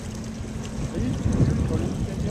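Wind buffeting the phone's microphone: a low, uneven rumble that swells about a second and a half in.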